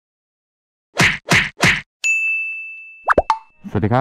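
Edited intro sound effect: three short noisy hits in quick succession, then a bell-like ding that rings out and fades over about a second and a half, with a couple of quick rising blips over it. A man's voice starts right at the end.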